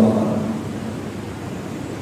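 Steady background noise, an even hiss with no distinct events, following the end of a man's word at the very start.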